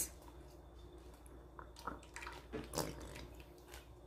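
Faint, scattered drips and small ticks, about half a dozen spread through the middle few seconds, as the last drops of condensed milk fall into an aluminium pot on an electric hot plate, over a low steady hum.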